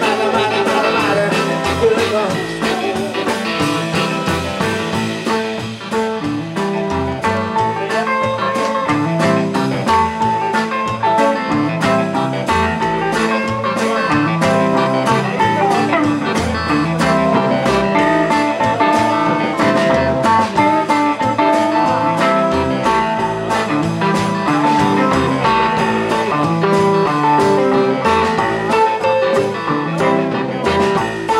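Live blues band playing an instrumental break: electric guitar, drum kit, upright bass and keyboard, with no singing.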